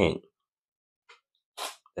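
A short, sharp intake of breath about one and a half seconds in, between otherwise near-silent pauses in the talk.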